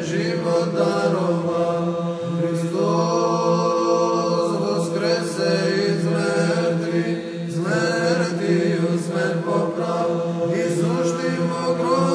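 Orthodox church chant: a male voice sings a slow, ornamented melody over a steady held drone note.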